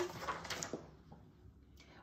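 A picture book's page being turned by hand: a brief, faint paper rustle with a couple of soft taps in the first second.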